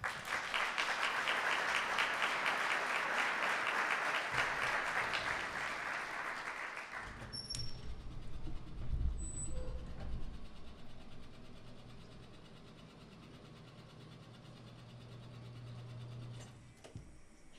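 Audience applauding at the end of a talk, loud and steady for about seven seconds, then dying away. A low steady hum and a few faint knocks remain after it.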